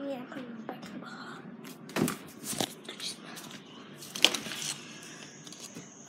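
Handling noise from a handheld phone being moved about: rustling with a few sharp knocks and taps, the loudest about four seconds in. A faint high steady tone comes in near the end.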